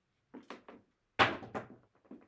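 Dice clicking together in the hand a few times, then thrown onto a felt craps table. They land with a sharp thud a little over a second in and strike once more as they bounce to a stop.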